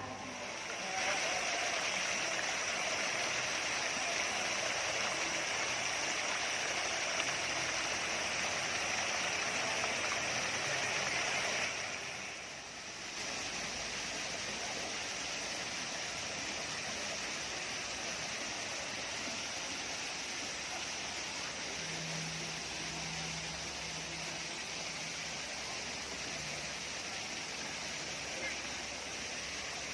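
Water splashing steadily from small fountain jets and a cascade into an ornamental pond, a continuous rush that dips briefly about twelve seconds in.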